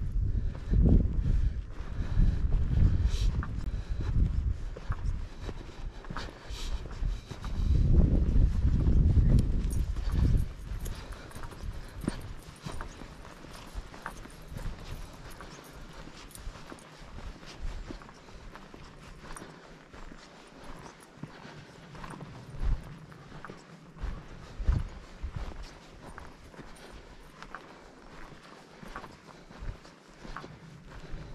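Footsteps of a hiker walking on a dirt trail, an irregular run of soft crunches and thuds. A heavy low rumble covers the steps for about the first ten seconds, then drops away, leaving the steps clearer and quieter.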